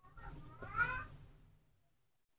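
A baby monkey's short, high-pitched call, rising in pitch and lasting about a second.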